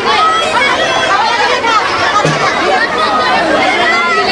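Large crowd of people all talking at once, a loud, steady babble of many overlapping voices.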